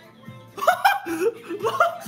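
A young man laughing in a run of short, loud bursts starting about half a second in, over faint background music.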